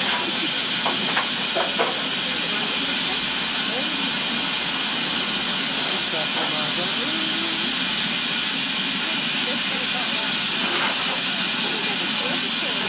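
Steam hissing steadily from BR Standard Class 4MT 2-6-0 steam locomotive 76079 standing at rest, a high, even hiss with faint voices underneath.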